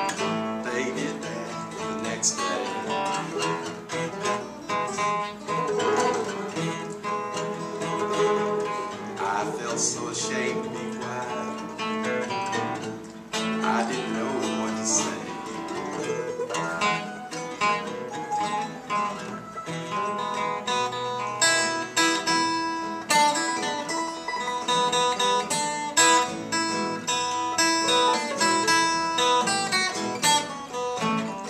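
Solo acoustic guitar playing an instrumental break between verses, a steady run of plucked notes. About two-thirds of the way in the playing turns busier and brighter, with more high notes.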